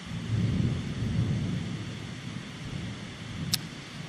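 Rolling thunder: a low rumble that swells about a quarter second in and slowly fades over the next few seconds.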